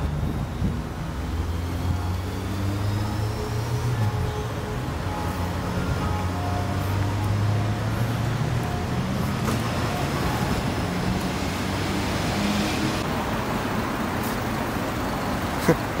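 Steady road-traffic and engine noise, a low hum, with faint voices in the background and a few clicks near the end.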